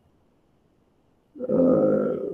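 Silence, then about one and a half seconds in a man's drawn-out vocal sound begins: one steady, held voice with no words, slowly fading.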